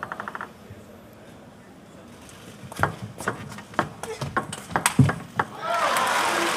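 A table tennis rally: a quick run of sharp clicks as the plastic ball strikes the rackets and the table several times a second. Crowd applause breaks out near the end as the point is won.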